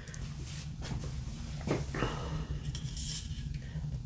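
Quiet room tone with a steady low hum and a few faint, brief handling sounds of a beer can being turned in the hand.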